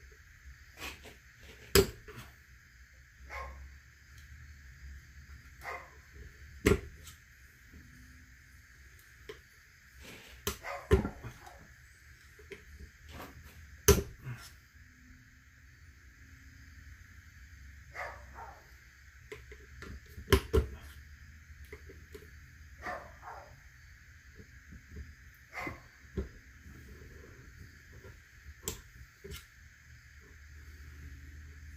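Irregular sharp metal clicks and scrapes from a thin pick working at the snap ring in the end of a hydraulic cylinder clamped in a bench vise, as it tries to lever the ring out of its groove. A steady high-pitched hum runs underneath.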